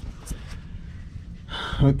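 Low background noise with a couple of faint clicks, then a man's voice starting near the end.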